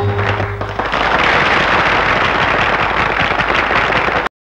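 Old film song soundtrack: the tabla-led music ends about a second in, giving way to a dense, even crackling noise that cuts off suddenly near the end.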